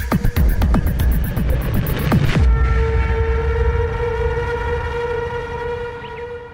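Electronic background music: a fast pulsing beat that stops about two and a half seconds in, leaving a held chord that slowly fades.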